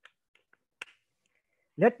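A few small clicks from the blue plastic cap of a water bottle being closed, the sharpest about a second in. A man starts speaking near the end.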